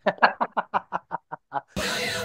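Laughter: a run of about ten quick, evenly spaced 'ha' pulses that grow fainter. Near the end it gives way to rock music.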